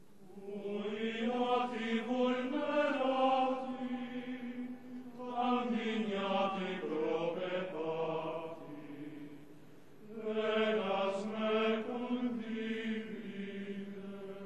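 Sung liturgical chant: slow, held sung notes in three phrases of about four seconds each, with brief pauses between them.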